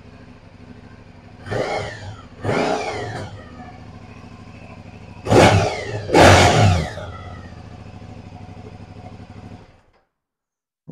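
Aprilia Dorsoduro 900's 90-degree V-twin engine idling steadily, blipped on the throttle four times in quick revs that rise and fall back to idle; the last two are the loudest. The sound cuts off just before the end.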